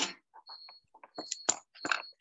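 Cricket chirping: short stretches of a thin, high, steady trill that start and stop over and over. Several sharp clicks come in between, the loudest about halfway through.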